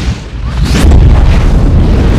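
Cinematic intro sound effect: a short rising whoosh about three-quarters of a second in, then a loud, deep boom whose low rumble carries on.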